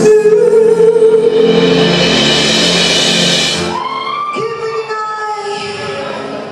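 Live band music with singing: a long held note over a cymbal wash, then an abrupt change about four seconds in to another passage, where a note rises and is held.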